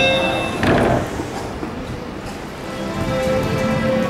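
Steady musical tones over the noise of a monorail station platform. There is a short loud knock about a second in, and a steady hum comes in near the end.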